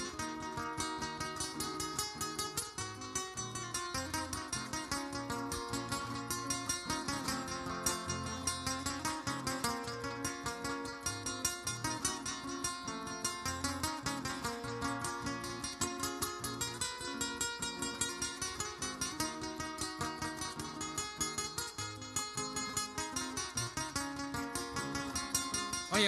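Acoustic guitar playing a fast plucked instrumental passage of Panamanian décima accompaniment, with a steady bass line under the melody.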